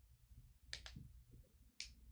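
Three short, sharp clicks over a low steady hum: two close together about three-quarters of a second in, and one near the end.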